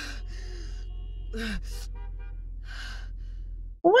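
A woman gasping for breath about four times over a low, steady droning rumble that cuts off just before the end.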